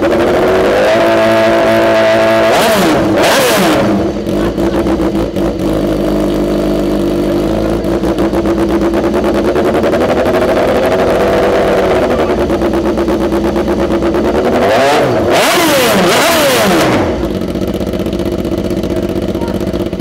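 BMW PR12 production racer's four-cylinder superbike engine idling on the paddock stand through its Remus full exhaust system. It is revved up hard twice, about three seconds in and again about fifteen seconds in, each time dropping back to idle.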